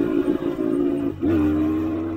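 A 1980 Honda dirt bike's engine running as the bike rides along, a steady pitched hum that dips briefly a little past halfway and then picks back up and holds steady.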